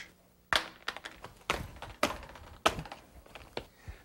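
A HomeRight PaintStick's PET plastic handle knocking and clicking as it is handled and weighted in a strength demonstration. There are about five sharp hollow knocks, a half-second to a second apart, with lighter clicks between them.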